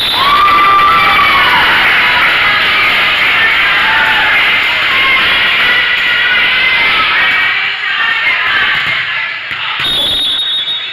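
Girls' voices cheering and shouting together, as players and spectators celebrate a point in a volleyball match; loud from the start and easing off near the end.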